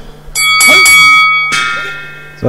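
Two-note chime signalling the start of a round: a bright ringing note, then a second note about a second later that rings on and fades away.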